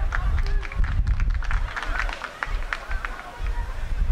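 Live football-match sound: voices calling out, with many short sharp knocks and a low rumble underneath.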